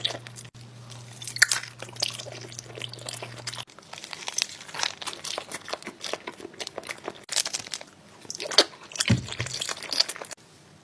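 Close-miked eating of a green jelly candy shaped like a Perrier bottle: irregular crunchy bites and chewing with many short crackles, and the jelly being pulled apart near the end.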